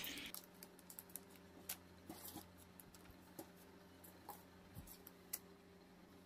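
Near silence with a faint steady hum and scattered light clicks and taps: a plastic rice scoop knocking against a plastic-lined bowl as steamed glutinous rice is scooped in.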